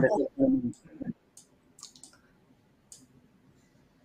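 A voice trails off in the first second, then about five faint, scattered computer clicks over the next two seconds.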